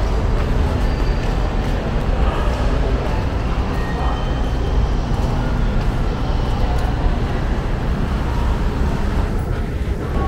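Steady low rumble of indoor mall ambience, even throughout with no distinct events.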